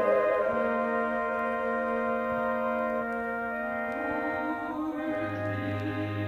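Orchestral accompaniment in a chamber opera holding long sustained chords just after a soprano's vibrato note ends. The harmony shifts about four seconds in, and a low held note enters near the end.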